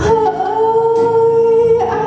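A female singer holds one long, steady sung note into a microphone, backed by electric guitar and keyboard.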